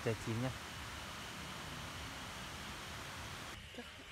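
A man's voice says two words, then a steady hiss of outdoor background noise with no distinct events.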